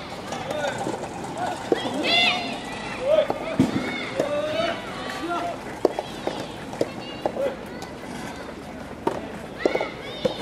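Several voices calling out and shouting around a soft tennis court, with a few sharp, short knocks in the second half.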